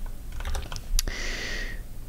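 A few scattered clicks of computer keys and mouse buttons, then a short hiss lasting just under a second about halfway through.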